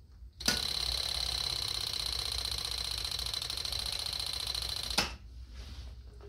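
Electric fuel pump of a 1984 Honda Shadow 700 running on a booster box with its outlet line disconnected, a rapid steady ticking buzz that switches on abruptly about half a second in and cuts off about five seconds in. The pump is weak, delivering only about two ounces in the five-second run.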